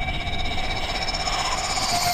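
A sustained eerie drone from the show's score: two steady held tones, one middle and one high, over a low rumble, setting suspense.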